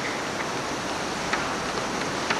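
Steady hiss of hall room tone and old camcorder recording noise, with a few faint clicks.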